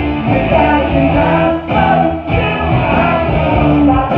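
Live rock band playing loudly through a PA, with electric guitar, bass, drums and keyboards, and a lead vocal singing over it.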